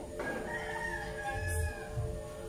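A rooster crowing once in one long call, over steady background music.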